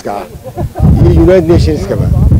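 A man speaking into a handheld microphone. From just under a second in, a loud low rumble of wind buffeting the microphone runs under his voice.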